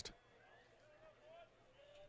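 Near silence at a ballpark, with faint, distant voices.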